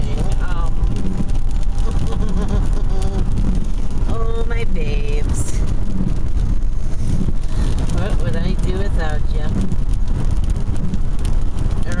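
Inside a moving car: steady low road and engine rumble, with voices talking quietly over it at times.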